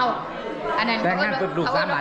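Speech: people talking up close, with the chatter of other people in the room behind.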